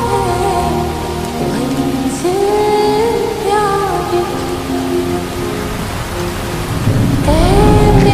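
Slowed, reverb-heavy Hindi pop song with rain sound effects mixed under it: a slow gliding melody line over a steady hiss of rainfall. A low rumble, like thunder, swells near the end.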